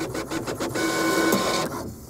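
A small machine clicking and whirring: a quick run of clicks, then a steady whirr with a faint hum for about a second, fading near the end.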